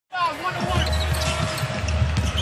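Basketball dribbled on a hardwood court, the bounces heard over a steady arena crowd rumble.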